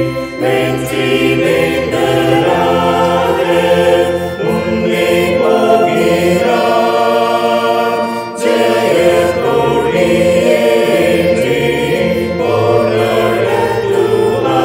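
A choir singing a Tamil Christian hymn line by line, with short breaks between the sung phrases.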